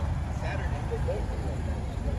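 Faint, indistinct conversation from people standing nearby, over a steady low rumble.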